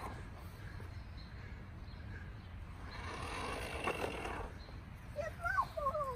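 Quiet outdoor ambience: a low steady rumble, a faint rustle in the middle with one small click, and a few short high sliding calls near the end.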